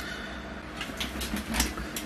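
A steady low machine hum, with a few soft clicks and knocks in the middle from the camera being handled and carried back from the tank.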